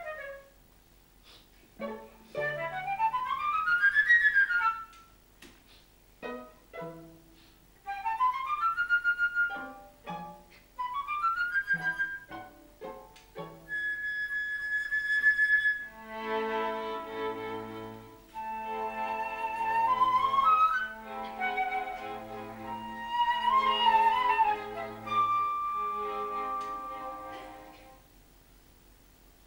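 A small instrumental ensemble plays contemporary opera music with no singing. It opens with quick scale runs climbing in pitch, broken by short gaps. Near the middle a single high note is held, and from there sustained chords sound over a low note repeating about every two seconds, fading near the end.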